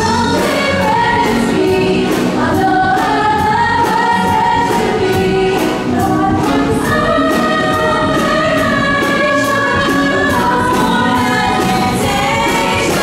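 A musical-theatre cast singing together in chorus with a live band of electric guitars and keyboard, over a steady beat.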